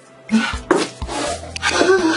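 A person crying, wailing in short breathy bursts over steady background film music.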